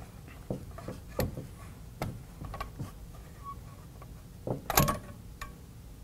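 Steel parts of an 1867 Roper revolving shotgun clicking and scraping as its threaded front end is unscrewed from the receiver and drawn off. There is a series of sharp metallic clicks, then a louder, denser clatter of metal about five seconds in.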